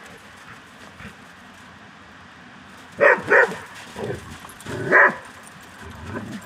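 Dogs play-fighting, one barking: two quick barks about three seconds in and another about five seconds in.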